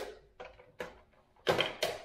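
Sharp plastic clicks and clunks as a blender's locking lid is unlatched and lifted off the jar: about five separate knocks, the loudest two near the end.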